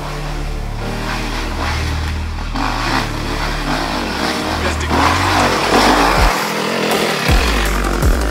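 Off-road enduro motorcycle engines revving hard, the pitch rising and falling and growing louder in the second half, over a music bed with a deep, stepping bass line.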